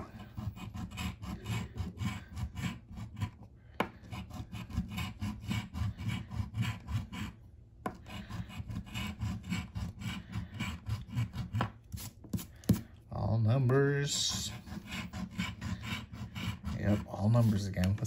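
A coin scraping the scratch-off coating from a paper lottery ticket in quick, repeated rubbing strokes, with brief pauses about four and eight seconds in.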